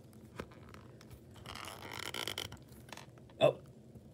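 Quiet handling of a plastic dinosaur action figure as its torso joint is flexed: a faint click about half a second in, a soft rustle around two seconds, and a brief louder sound near the end.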